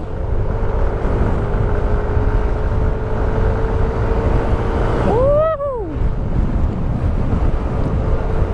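Wind buffeting the microphone over the steady drone of a Yamaha Nmax 155 single-cylinder scooter riding at road speed. About five seconds in, a short pitched sound rises and falls.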